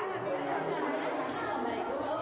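Many voices talking at once: steady chatter of a crowd in a large room.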